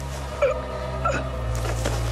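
Two short grunts or gasps from a person straining in a struggle, about half a second and a second in, over a low steady drone of film score music.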